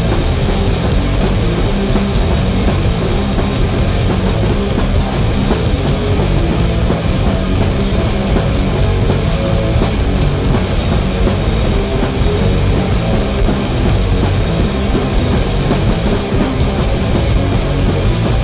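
Raw punk band playing live: distorted electric guitars and a drum kit, loud and dense without a break.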